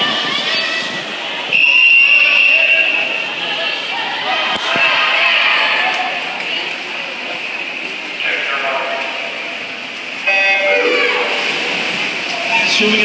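Crowd chatter and cheering echoing in an indoor pool hall. A long, high whistle sounds about a second and a half in, and an electronic start horn with a buzzy pitched tone sounds near the end, sending the swimmers off the blocks.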